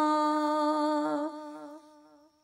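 A woman's voice holding one long sung note, the drawn-out end of the word "maula" in an unaccompanied devotional dua. The pitch stays steady, wavers slightly, then fades out about a second and a half in.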